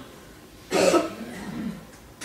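A single cough about a second in, sudden and loud, dying away within about a second.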